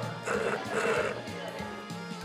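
Two loud slurps of a tapioca milk drink sucked up through a wide bubble-tea straw, one right after the other, over background music.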